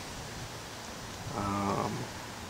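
Low, steady background hiss, then a short hummed "mm" from a man's voice, lasting about half a second, near the end.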